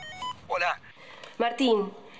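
Mobile phone ringtone: a few quick electronic beeping notes that stop about a quarter second in. Speech follows as the call is answered.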